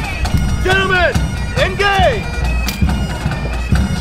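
Bagpipes playing a steady drone, with two long rising-and-falling shouted calls about one and two seconds in and a single sharp click near three seconds in.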